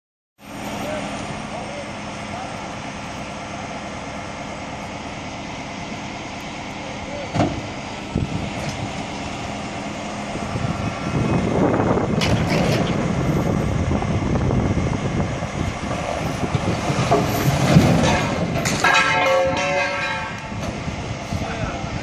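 Diesel engines of heavy-duty rotator tow trucks running steadily, then working harder from about halfway through as their winches and booms pull a rolled-over semi trailer back onto its wheels. A sharp knock comes early in the pull, and a heavy thump near the end.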